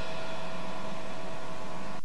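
Cassette tape hiss and low hum in the gap after a dance organ tune, with the faint tones of the organ's last chord dying away and cutting off suddenly at the end.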